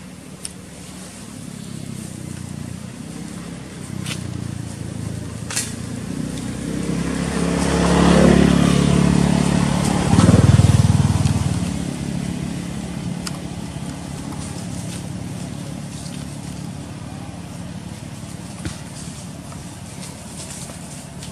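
A motor vehicle's engine passing by: it grows louder to a peak about eight to eleven seconds in, then fades away. A few sharp clicks are heard in the first six seconds.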